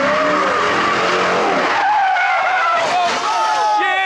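A car accelerating hard with its tyres squealing as it loses control, then spectators crying out in alarm near the end as it leaves the road.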